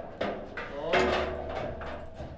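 Table football (foosball) table knocking and rattling just after a goal: a sharp knock about a fifth of a second in, then a louder rattle about a second in that fades away, typical of the ball running through the goal and its return.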